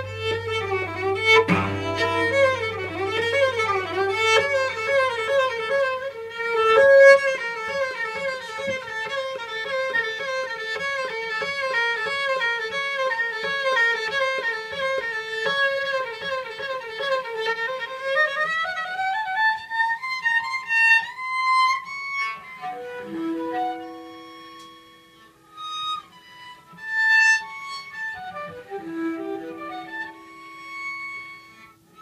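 Solo cello played with the bow: a fast run of notes flicking back and forth against a repeated note, climbing higher about eighteen seconds in. After that come slower, separate held notes with gaps between them.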